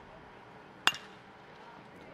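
Metal college baseball bat hitting a pitched fastball for a base hit: one sharp, ringing crack about a second in.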